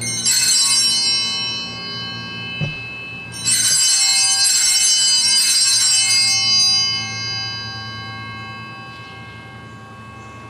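Altar (sanctus) bells rung twice at the consecration: a short jangle at the start, then a longer one of about three seconds that rings on and fades away. They mark the priest's genuflection and the elevation of the consecrated host.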